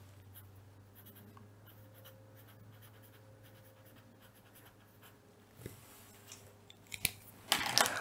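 Felt-tip pen writing on paper: faint, soft scratching strokes, then a few light taps and clicks near the end.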